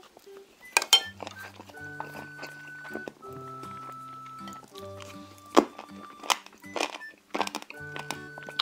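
Background music of sustained melodic notes over close-miked eating sounds: sharp crunching bites and mouth sounds from chewing steamed monkfish and bean sprouts, with a few loud bites about a second in and again past the middle.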